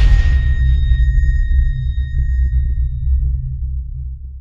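Tail of an electronic logo-intro sound effect: a deep sub-bass rumble slowly fading, with a high ringing tone that dies away about three and a half seconds in.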